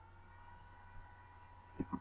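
Low room tone with a faint steady electrical hum. There is a small blip about a second in and two brief soft sounds close together near the end.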